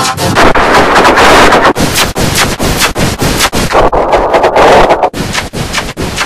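Heavily distorted digital audio effect: a loud, harsh crackling noise full of rapid clicks, easing slightly about five seconds in.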